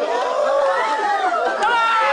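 Mourning women wailing and crying out in grief, several voices overlapping over crowd chatter.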